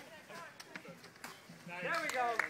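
Faint voices of several people talking and calling out, with a couple of soft clicks. A man's voice grows louder near the end.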